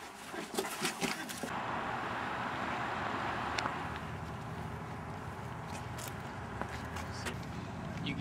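A few knocks and rustles in the first second and a half, then the steady low rumble and hiss of outdoor traffic noise, with a few faint clicks.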